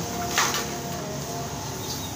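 A brief handling noise from a hand working among the plastic panels and wiring under a scooter's body, about half a second in, over a steady background hum.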